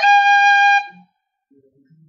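Tin whistle sounding one clear high G for just under a second, starting with a tap (golpe) ornament: a quick flick in pitch at the very start as a finger strikes and releases an open hole, then the steady note.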